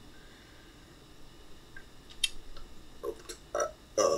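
A pause in a home voice recording: faint room tone. In the last two seconds come a few sharp clicks and short vocal sounds.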